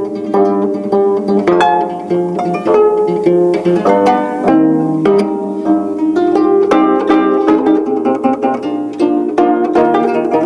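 A quartet of 25-string gayageums playing together: rapid plucked notes in a driving rhythm, a melody over lower repeated notes.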